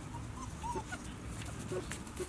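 A young White Swiss Shepherd puppy, about six and a half weeks old, giving a few short, faint high whimpers.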